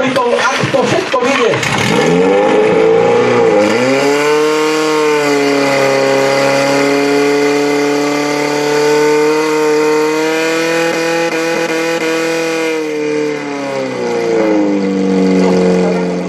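Portable fire pump's engine running hard. Its pitch sags and wavers for the first few seconds, then climbs and holds a steady high note as it pumps water through the attack hoses. It dips briefly near the end and picks up again.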